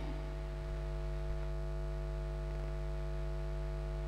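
Steady electrical mains hum with several steady higher tones above it, and a faint click about a second and a quarter in.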